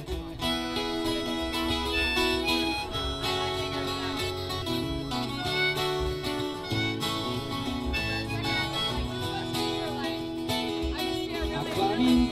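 Instrumental break in an acoustic folk song: a harmonica plays the melody over two strummed acoustic guitars.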